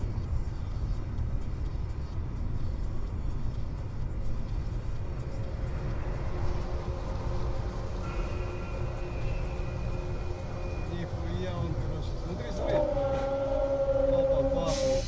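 Steady road and engine rumble inside a moving car, recorded by a dashcam. In the second half, steady held tones come in, ending in a louder held tone near the end.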